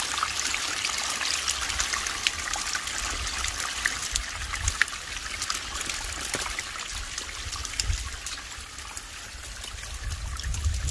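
Water trickling and splashing steadily down a small homemade cement garden waterfall, with many little drop splashes.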